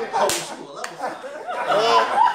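Audience laughter following a punchline, with one sharp smack about a third of a second in and a small click shortly after.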